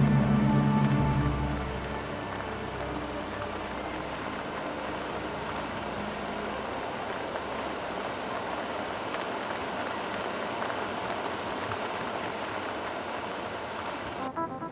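A held low music chord fades out over the first couple of seconds, leaving a steady, even hiss of outdoor ambience.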